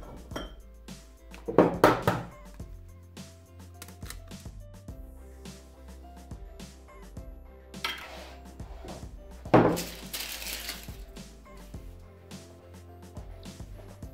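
Eggs being cracked against the rim of a plastic mixing bowl and opened into it, with sharp knocks and clinks of shell and dishes, the loudest about nine and a half seconds in. Background music plays under it.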